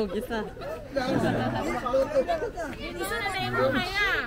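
Several people talking at once: overlapping casual chatter, no single clear voice.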